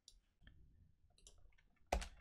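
Faint, scattered clicks of computer input, keys and mouse buttons, as a block of code is selected and deleted in an editor, with a sharper, louder click right at the end.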